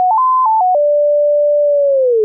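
A pure sine tone from a Kilohearts Phase Plant analog oscillator, steady and loud. Its pitch jumps up in quick steps as the harmonic multiplier is raised, then steps back down, holds steady for about a second, and starts to slide lower near the end.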